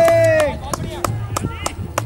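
A brief held shout that rises and falls in pitch, then a run of sharp, evenly spaced knocks, about three a second.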